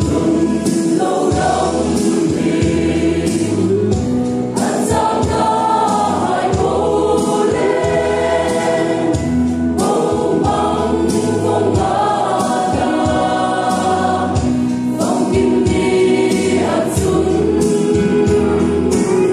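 Mixed choir of young women and men singing a gospel song, with instrumental accompaniment: a steady bass line and a regular percussion beat.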